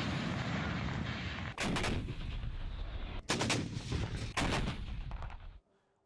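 Gunfire and explosions: a few sharp reports over a constant rumble, cutting off abruptly shortly before the end.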